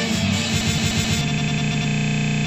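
Rock band jam with electric guitar. About halfway through, the playing gives way to a steady buzzing drone.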